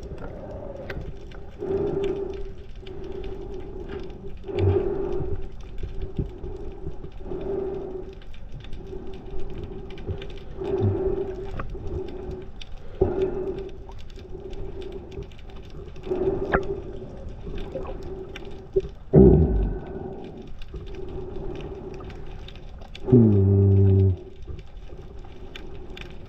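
Underwater sound: a steady hum that swells every two to three seconds. Two louder low tones stand out later on, one sliding down in pitch and another held for about a second.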